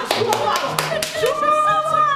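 A small group clapping in a quick rhythm and cheering, with a long wavering held voice in the second half.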